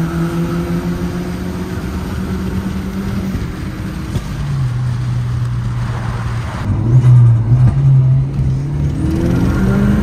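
Audi S3 replica's 1.8T turbocharged four-cylinder engine running on the move. The steady engine note drops to a lower pitch about four seconds in, then gets louder around seven seconds.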